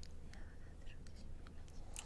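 Faint whispering: two people conferring in low voices.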